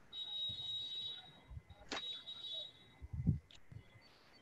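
Faint high-pitched electronic beeping tone in two stretches of about a second each, with a sharp click between them and a few soft low thumps near the end.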